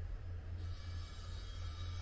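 Wind buffeting the microphone outdoors: a steady low rumble with no other clear event.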